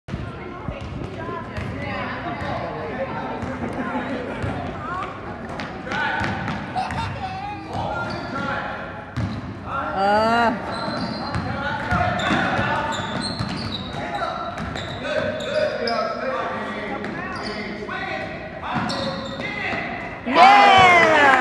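Basketball dribbling and bouncing on a hardwood gym floor during play, with scattered voices of players and spectators, all echoing in a large gym.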